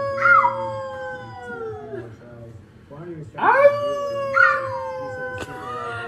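Two long, drawn-out howls, each held for about two seconds and sliding slowly down in pitch. Shorter, higher calls that swoop up and then fall overlap the start of each howl, like a second voice howling along.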